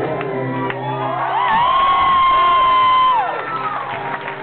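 An acoustic guitar's last chord rings out while a live audience cheers. A long, loud whoop starts about a second in, is held for about two seconds, and drops off near the end.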